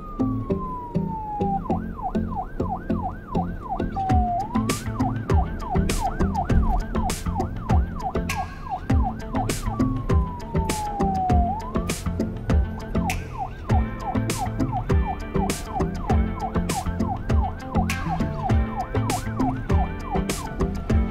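Police siren sound effect over a backing track with a steady beat. The siren alternates a slow falling wail, heard near the start and again about halfway, with a fast yelp warbling about four times a second.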